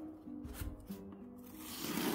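Scissor blade drawn along the packing-tape seam of a cardboard box, slitting the tape, a scraping noise that grows louder near the end, over quiet background music.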